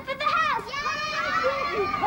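A group of young children calling out at once, several high voices overlapping.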